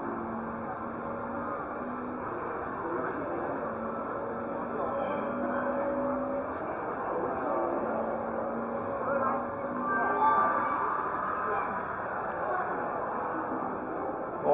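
Background music of long, slowly changing held notes over a steady murmur of many voices, with a few nearer voices rising briefly about ten seconds in.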